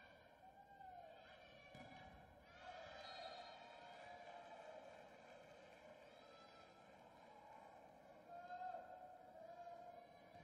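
Faint sports-hall crowd noise with indistinct voices calling out, very quiet overall.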